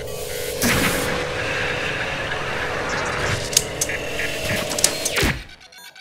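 Logo-animation sound design: a swelling whoosh that settles into a dense, steady hum with a few sharp hits, then a falling power-down sweep about five seconds in, ending in brief glitchy crackles.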